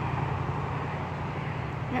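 Steady low rumble of road traffic with no distinct events.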